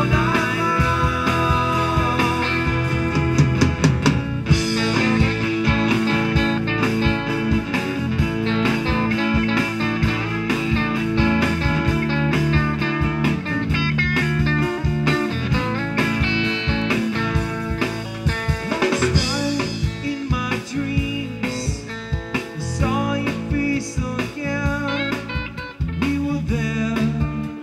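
Live band in an instrumental break: electric guitar playing a lead line over acoustic guitar and bass.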